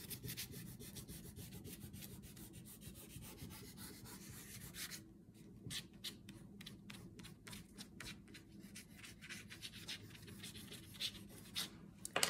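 Faint wax crayon scribbling on paper: quick continuous back-and-forth colouring at first, then from about five seconds in, separate short strokes, several a second.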